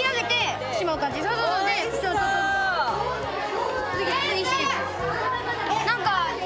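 Children's voices chattering and exclaiming over background music.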